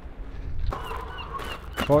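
A bird calling in a quick run of short high chirps, about five a second, starting just under a second in, over a low wind rumble on the microphone.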